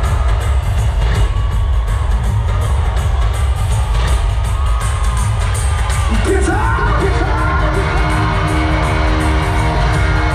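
Live band playing loud amplified rock through an arena PA, with the crowd cheering and yelling. A heavy bass-and-drum low end runs throughout, and held chords come in about six seconds in.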